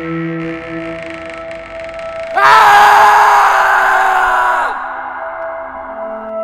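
Horror film score: a dark sustained drone, broken about two and a half seconds in by a sudden loud, shrieking stinger that lasts about two seconds, sinks in pitch as it fades, and gives way to the drone again.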